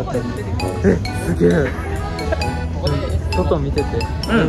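Pop music with singing and a steady beat, played over a stage sound system.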